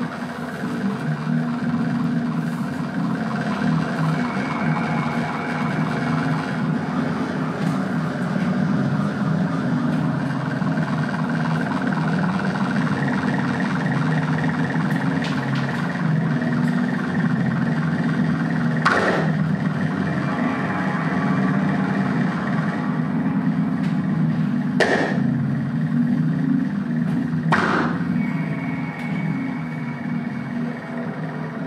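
Modular synthesizer improvisation: a steady low electronic drone with a thick, grainy layer of higher tones above it. Three sharp noisy hits cut through it in the last third.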